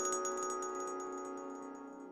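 Short outro jingle of a TV news channel: struck, bell-like notes ringing on and fading away steadily, with quick light high notes that thin out.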